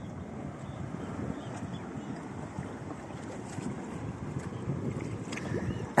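Steady rushing of wind on the microphone mixed with water washing around a kayak on open sea water, with no clear engine tone.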